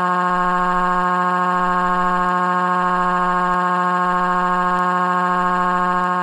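A text-to-speech voice crying in one long, flat, unwavering wail, held at a single pitch for about eight seconds, with a small bend in pitch as it ends.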